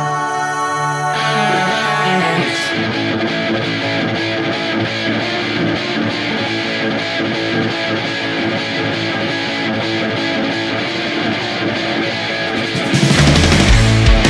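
Heavy stoner rock played by a guitar, bass and drums band: an instrumental stretch led by electric guitar, with the band coming in heavier and louder about a second before the end.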